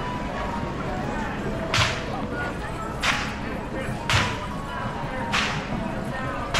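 Whip cracking four times, each a sharp crack about a second apart, over the hubbub of an outdoor crowd.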